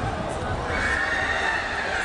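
A long, high-pitched held shout about half a second in, over the noise of shouting voices in a large sports hall during a karate bout.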